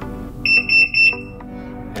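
MSA Altair 4XR gas detector's alarm sounder giving two quick high-pitched beeps about half a second in, as the monitor prompts for a fresh air setup.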